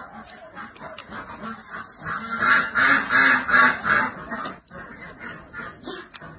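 Domestic ducks quacking: a quick run of about five loud calls in the middle. Slurping and chewing of food is heard around them.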